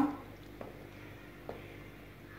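Two faint, light clicks about a second apart: a spoon touching the side of a pot while stirring a stew.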